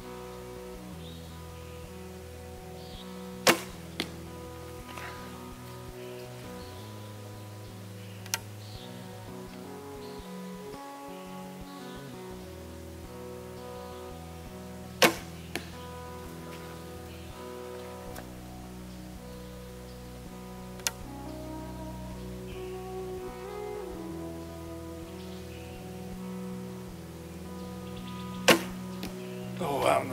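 Three shots from a traditional bow, spaced about twelve seconds apart. Each is a sharp snap of the string, and after the first two a softer hit of the arrow on the target follows about half a second later. Background music plays throughout.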